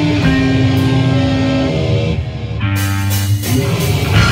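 Live punk rock band playing: a melodic line of held notes over drums and bass. The sound thins out about two seconds in, then the full band comes back in near the end.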